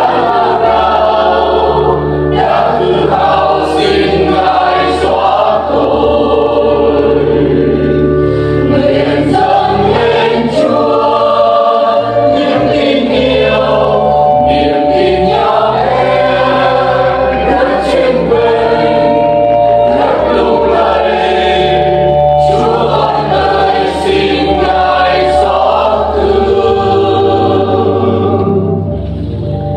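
A church choir singing a Vietnamese Catholic hymn in several voices over a steady instrumental bass accompaniment.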